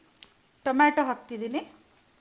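Faint sizzling of chopped vegetables cooking in a pot, with a woman's voice speaking briefly in the middle.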